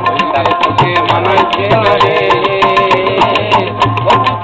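Live Baul folk song: a man sings over a small plucked lute, with tabla and hand drums keeping a fast, steady beat.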